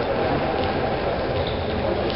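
Steady rumbling background noise of a large indoor sports hall, with no clear voice or single event standing out.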